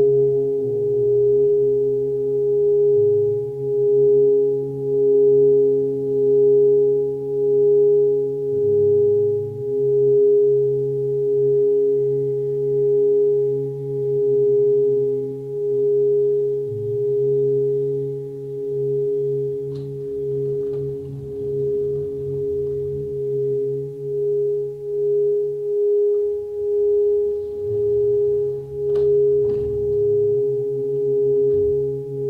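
Singing bowl sounding one steady ringing tone held without decay, with a slow, even wobble in loudness, over quieter lower humming tones. A few faint clicks come in the second half.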